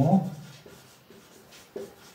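Marker pen writing on a whiteboard: a run of faint short strokes as a word is written out, just after a spoken word ends.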